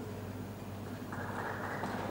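Steady low electrical hum in the hall's sound system, joined about a second in by faint scattered applause.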